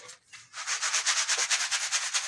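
Wet, gritty concrete mix rattling and rasping in a plastic tuff-tile mould as the mould is vibrated to settle it. The rapid, even rattle of about ten pulses a second starts about half a second in.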